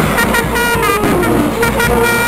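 A brass band playing a melody, loud and close, the notes moving in quick steps.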